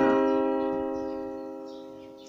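Yamaha portable keyboard on its piano voice, a C minor triad (root, minor third and fifth) struck once and left to ring, fading steadily over two seconds.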